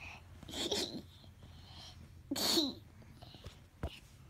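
Two sneezes, about two seconds apart, each a short hissing burst ending in a falling voiced tail, then a short tap near the end.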